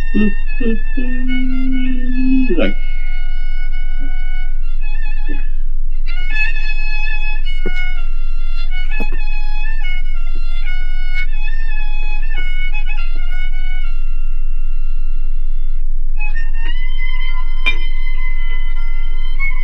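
Kamancheh (Persian spike fiddle) bowing a slow melody of held notes that step from one pitch to the next, pausing briefly twice. Over the first two or three seconds a man's voice breaks out over the playing.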